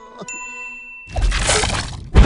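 Cartoon sound effects: a bright high ding rings for about a second, then a loud rumbling, cracking noise surges in about a second in and stays loud.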